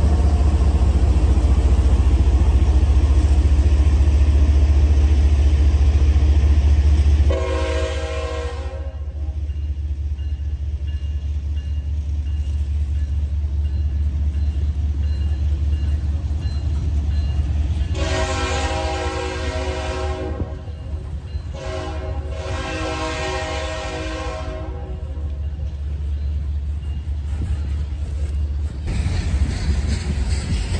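GE diesel freight locomotives passing close by with a loud, steady engine rumble; about seven seconds in this gives way to the lower rumble of hopper cars rolling past. A multi-chime locomotive horn sounds three times: a short blast, then two longer ones past the middle.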